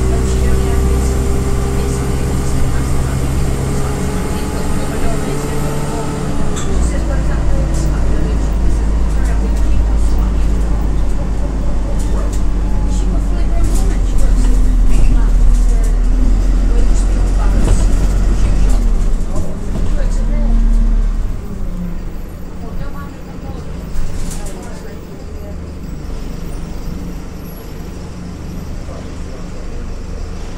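Single-deck bus engine running steadily with a whine over it for the first six seconds. The engine drone dies down after about twenty seconds.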